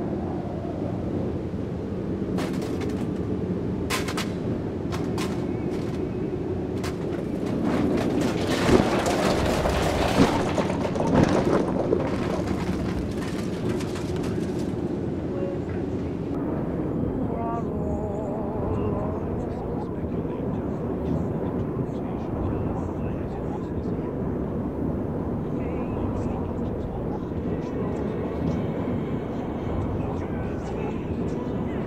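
Sound effects from an animated film: a steady low rumble throughout, with a string of sharp cracks and crashes in the first half, the loudest about nine to eleven seconds in. It then eases to a quieter rumble with a few faint electronic blips.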